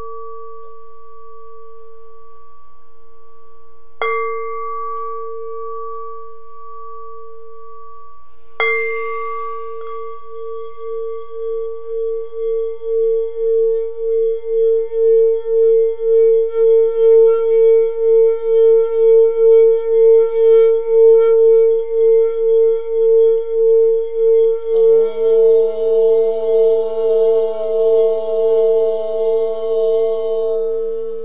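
A singing bowl is struck twice, about 4 and 8½ seconds in, and rings on with a steady tone. It is then played around the rim, so that it sings with an evenly pulsing swell that grows louder. Near the end a second, lower tone joins.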